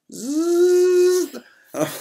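A man imitating a power drill with his voice: a buzzing whirr that rises at first, holds at one pitch for just over a second, then stops.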